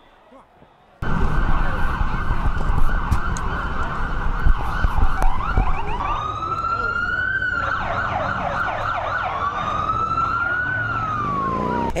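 Emergency-vehicle sirens on a city street, starting about a second in: first a fast warbling yelp, then two slow wails that each rise and fall. A loud low rumble of street noise runs underneath.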